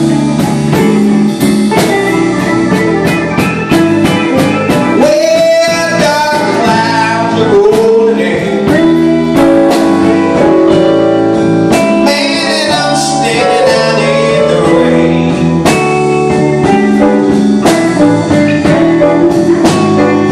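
Live band playing: electric guitars, keyboards and drum kit, with a lead line that bends and slides in pitch around the middle.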